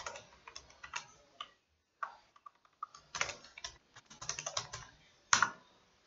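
Typing on a computer keyboard: quick runs of keystrokes with a brief lull about two seconds in and a louder keystroke near the end.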